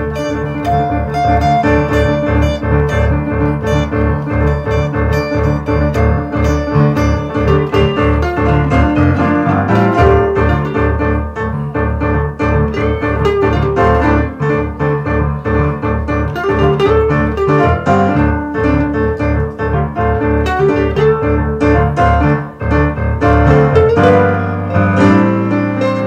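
Instrumental band passage: an electric guitar played over keyboard and bass, with a steady pulse in the low end.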